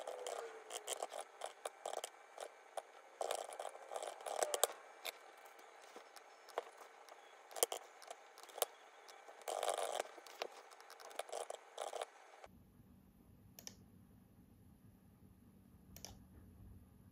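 Typing on a full-size mechanical keyboard: quick, irregular keystroke clacks in bursts with short pauses. The typing stops about twelve seconds in, leaving a faint low hum and a couple of single clicks.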